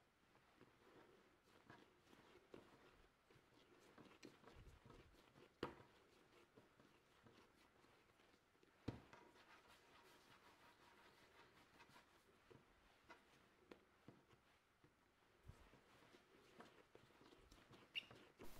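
Near silence, with faint soft sounds of hands shaping balls of bread dough on a countertop and two brief faint taps about five and a half and nine seconds in.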